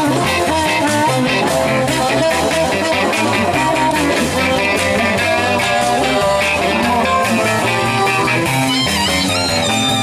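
Live blues-rock band playing an instrumental passage: amplified harmonica played into a vocal microphone over electric guitar, bass guitar and drums, with higher held notes near the end.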